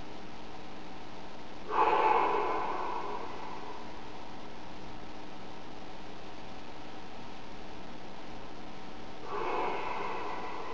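A man breathing deeply through his nose, twice: a louder breath about two seconds in, fading over about a second, and a softer one near the end, over a steady background hiss.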